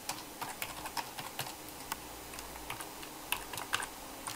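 Computer keyboard keys clicking as a password is typed: a quick, uneven run of keystrokes in the first second and a half, a pause, then a few more near the end.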